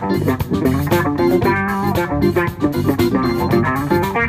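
Live band of electric guitar, bass guitar, drum kit and keyboard playing an instrumental funk tune, the guitar to the fore.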